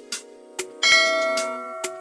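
A bright bell chime strikes a little under a second in and fades away over background music with a steady beat: the notification-bell 'ding' of a subscribe-button animation.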